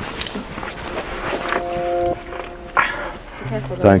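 A badger growling from inside a drain, a short held growl in the middle amid scuffling.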